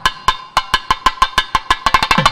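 Devotional temple music led by a drum played in rapid, sharp strokes. The strokes thin out and soften briefly at the start, then pick up again at about four to five a second.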